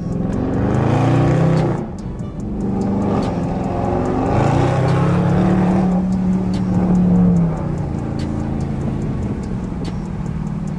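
Dodge Charger's 392 Hemi V8 accelerating, heard from inside the cabin. The engine note climbs, drops at a gear shift about two seconds in, and climbs again. It then holds steady at cruise and settles lower near the end.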